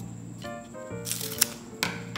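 Soft background music, with a crinkling rustle of a folded banana leaf being handled about a second in and a sharp click near the end.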